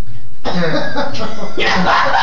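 Young men laughing hard, with coughing, breathy laughs and a drawn-out shouted word starting about half a second in.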